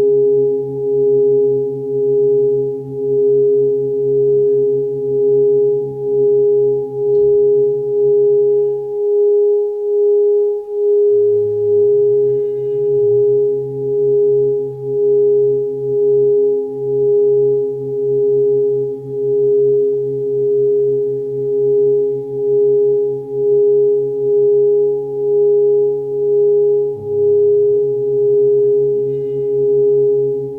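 Steady ringing meditation tone that swells and fades about once a second, like a rubbed singing bowl, over lower humming tones. The lower tones drop out for about two seconds roughly nine seconds in.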